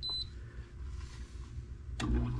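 GE window air conditioner's control panel giving a short high beep as a temperature button is pressed, then the unit's low steady hum. A sharp click comes right at the end, after which the hum grows louder.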